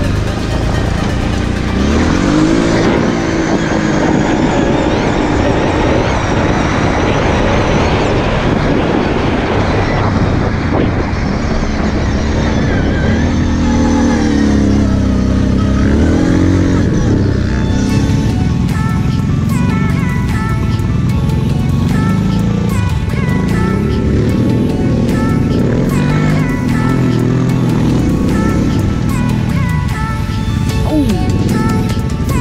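Quad bike engine revving, its pitch rising and falling with the throttle, mixed with electronic music with a steady beat that comes more to the fore after about halfway.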